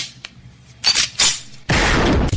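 Short, sharp sound-effect hits, one at the start and two close together about a second in, then loud hard-rock music kicking in abruptly near the end: the opening of a radio commercial.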